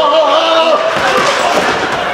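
A man's long, wavering cry that breaks off about a second in, followed by thuds of a body dropping onto a wooden stage floor.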